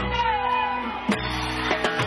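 Live cumbia band music: a held chord with one note sliding downward in pitch while the drums drop out, then the percussion comes back in with a hit about halfway through.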